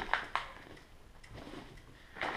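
Packaging being handled: a few short rustles and clicks from cardboard and plastic in the first half second, then faint handling noise.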